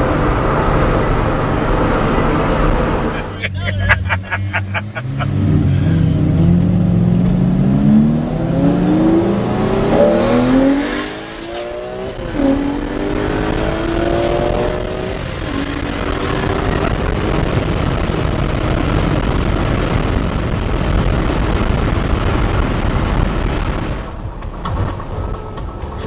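A car engine accelerating hard, its pitch climbing for several seconds, heard from inside the cabin, then settling into steady road and tyre noise while cruising. Background music plays at the start and comes back near the end.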